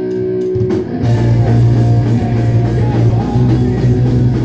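Punk-pop band playing live with electric guitars, bass and drum kit: a held, ringing guitar chord, then about a second in the full band comes in with drums driving a steady rock beat.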